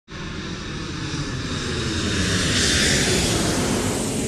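Airplane fly-by sound effect: a wide engine rush that swells to its loudest a little past the middle, then begins to ease off near the end.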